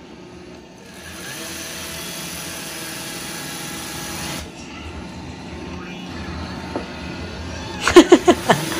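Robot vacuum cleaner running with a steady whir while carrying the weight of a small child sitting on top; the sound grows louder about a second in and eases a little just past halfway.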